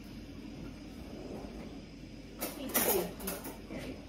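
Kitchen cutlery drawer pulled open about halfway through, with a quick rattle and clatter of cutlery as a teaspoon is taken out. Before it there is only quiet room tone.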